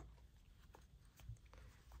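Near silence: room tone, with a few faint small ticks.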